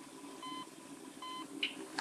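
Hospital patient monitor beeping: short, even beeps at one pitch, about three-quarters of a second apart, three times, over faint room tone.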